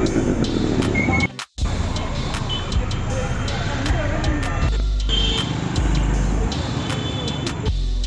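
Busy street festival soundscape: music playing over loudspeakers with a heavy bass, voices of the crowd, and motorbikes and other traffic going by. The sound cuts out briefly about a second and a half in.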